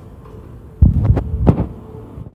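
A quick run of loud, low thumps and knocks starting about a second in, over a steady faint hum.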